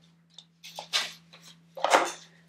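Construction paper rustling in short bursts as paper leaves are handled, with a small click early and a louder rustle near the end, over a faint steady hum.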